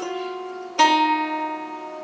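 Ten-string kantele-style zither with metal strings, plucked one note at a time: a note struck at the start and a louder one a little under a second in, each ringing on with a long, bell-like sustain.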